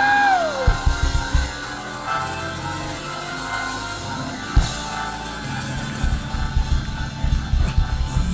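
Church band music behind the praise: held chords with scattered drum hits, and a single gliding shout from a man's voice right at the start.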